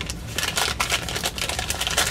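A small brown paper bag crinkling and rustling as hands squeeze and open it, a dense run of crackles.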